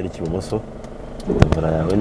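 Speech inside a moving car, over a steady low hum from the engine and road.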